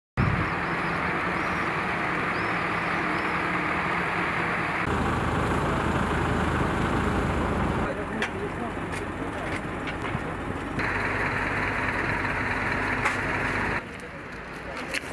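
Street ambience of parked buses running at idle, a steady hum under a noisy haze, with voices of people in the background; the sound changes abruptly in level and tone every few seconds.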